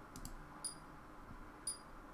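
Faint, regular high-pitched ticks, about one a second, over quiet room tone, with a couple of soft clicks just after the start.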